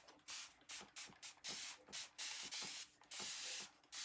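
A fine-mist spray bottle sprays water over a marker drawing on canvas in a quick series of short hissing bursts, about two a second, to wet the marker ink so it can be run around.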